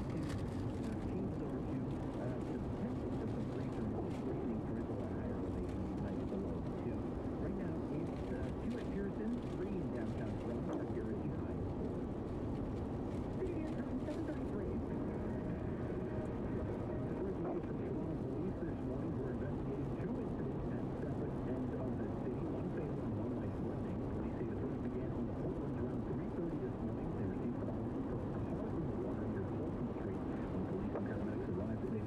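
Steady in-cabin road noise of a car at highway speed on wet pavement: tyres on the rain-soaked road and the engine making an even, low-pitched noise.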